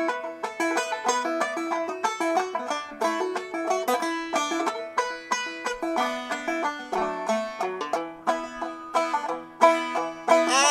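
Solo old-time tune on a Gold Tone kit banjo, tuned e-D-A-B-D, played as an instrumental break between verses: a steady stream of plucked notes with no voice.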